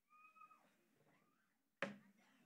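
Near-silent room tone with a faint, short, high-pitched call about a quarter of a second in, then a single sharp knock near the end.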